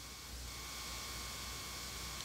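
Quiet room tone: a steady low hum and faint hiss, with no distinct sound events.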